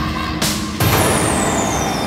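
Dramatic background score for a TV serial, laid under reaction shots. About half a second in comes a hissing whoosh, then a sharp hit near one second that leaves a high ringing tone sliding slowly downward. Low, rumbling music runs underneath.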